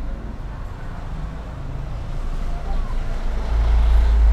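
Low rumble of road traffic, swelling over the last second as a vehicle passes close by.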